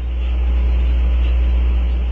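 Steady low hum with a faint even hiss above it, unchanging.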